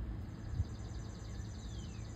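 A songbird singing faintly: a rapid high trill, then a down-slurred whistle near the end, over a low steady rumble of wind or handling noise.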